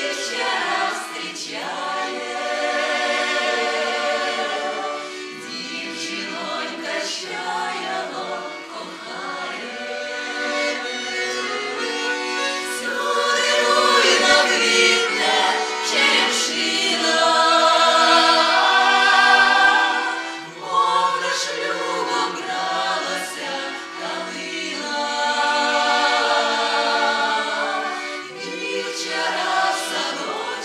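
Women's folk ensemble in Russian folk dress singing a folk song together in several voices, growing loudest in the middle with a brief dip soon after.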